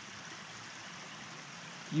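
Small stream of water trickling steadily among rocks.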